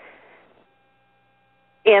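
A faint steady electrical hum, a thin high tone with overtones, after a soft breath-like noise fades out. A voice starts speaking just before the end.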